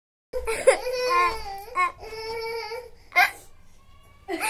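A young girl crying: a long drawn-out wail with a brief break in the middle, then a short sharp sob about three seconds in.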